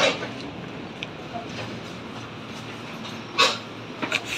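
Steady running noise inside a moving passenger train car, with a sharp clatter right at the start and a louder one about three and a half seconds in.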